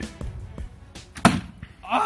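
A recurve bow shot: a single sharp thwack about a second in as the arrow is loosed and strikes the target a few metres away, with background music fading beneath it and laughter starting near the end.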